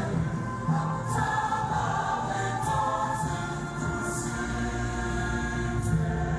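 Choir singing a hymn in several voices, sustained sung notes.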